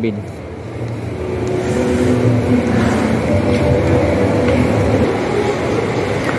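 Shopping mall background noise: a steady low rumble under a murmur of distant voices, with faint held tones in the middle.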